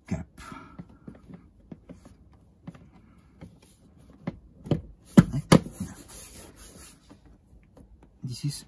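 A plastic dashboard end cover on a Volkswagen e-up is handled and pressed into place by hand, with light rubbing and small clicks. A little past halfway come two sharp snaps in quick succession as its clips engage.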